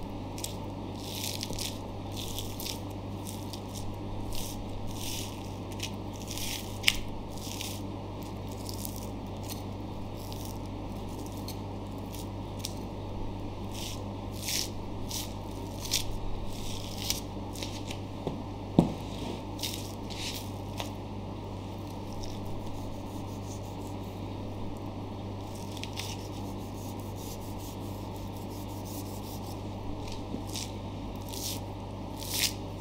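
A long knife slicing the fat cap away from a whole wagyu beef sirloin, the fat being lifted and peeled back by hand: irregular short slicing and peeling strokes, over a steady low hum. Two sharp clicks, one about a quarter in and a louder one about two-thirds through.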